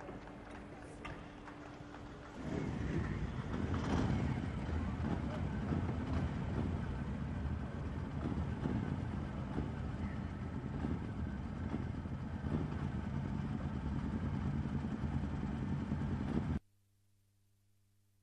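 Engines of a motorcycle escort and cars pulling away in a motorcade, with voices mixed in. The engines come up loud about two seconds in, hold steady, then cut off abruptly near the end, leaving near silence.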